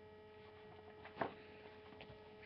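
Faint steady electrical hum with a few steady overtones, and a single brief sound a little over a second in.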